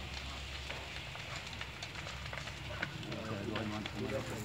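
A burning house roof crackling, with irregular sharp pops and cracks from the fire.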